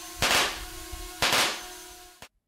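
A hovering racing drone's motors give a steady hum. Over it, its pyrotechnic propeller-snare gun fires two loud shots about a second apart, each with a short ringing tail.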